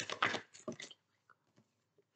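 A deck of oracle cards being shuffled by hand: a quick run of papery flicks and rustles, stopping about a second in.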